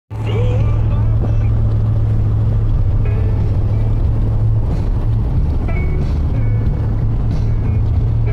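Car interior while driving: a steady, loud low drone of engine and road noise, with faint music and voices underneath.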